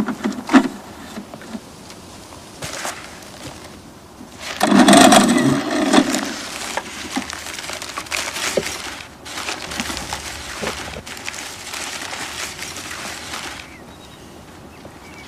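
Clicks and knocks as a blender and metal jug are handled, then tissue paper crumpling and rustling as a glass is unwrapped. The paper is loudest for a second or two about five seconds in.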